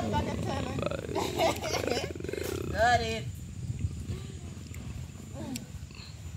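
Women's voices calling out in drawn-out, sliding exclamations and laughter for about three seconds, then quieter, with a few light knocks.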